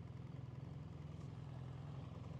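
Motorcycle engine idling faintly with a steady low pulsing, from the rider's BMW R1300GS boxer twin.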